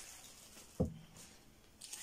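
Faint rustle of thin plastic clothing bags being handled and pulled apart, with one short sharp sound just under a second in that drops quickly in pitch.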